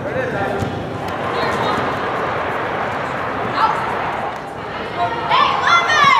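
Players and spectators shouting and calling out in an indoor sports hall over a steady background din. A louder, higher-pitched shout comes near the end.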